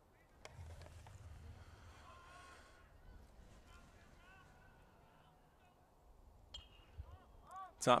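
Faint, distant voices of players and spectators, with a sharp knock about half a second in. Late on, a metal baseball bat strikes the ball with a short ping, hitting a pop-up.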